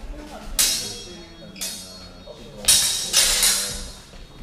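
Steel longsword blades clashing in a fencing exchange: about five sharp strikes, each ringing briefly, one near the start, one a second later and a quick flurry of three near the end.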